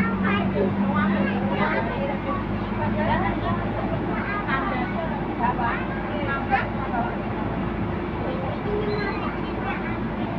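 Steady engine hum and road rumble heard from inside a moving Isuzu tour bus, with people talking indistinctly over it throughout.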